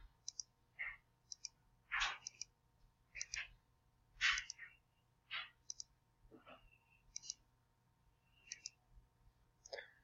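Computer mouse button clicked repeatedly, about once a second, each click a quick press-and-release pair, with a few softer brief sounds in between.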